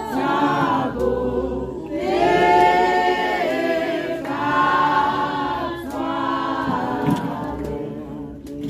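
A church congregation singing together without instruments, in long held phrases that swell and fade.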